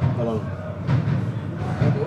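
Brief voices calling out, one about a quarter-second in and another near the end, over a steady low rumble of match-ground ambience.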